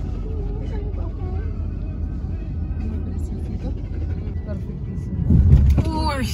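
Car driving along, heard from inside the cabin: a steady low rumble of engine and road noise that swells briefly near the end.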